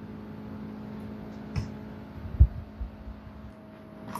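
Steady low hum, with a click and a few dull thumps in the middle, the loudest about two and a half seconds in.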